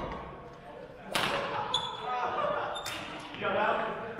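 Badminton racket strikes on a shuttlecock: two sharp hits about two seconds apart, echoing in a gymnasium, with a short shoe squeak on the court floor between them.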